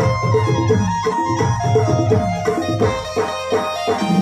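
Live keyboard band playing an Adivasi folk dance tune: electronic keyboards hold a melody over a quick, steady tabla-like drum beat.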